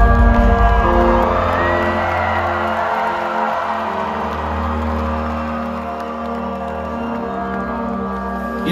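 Live concert sound through a large hall's PA: sustained synthesizer chords that shift a few times, with the crowd cheering and whooping over them, loudest in the first few seconds.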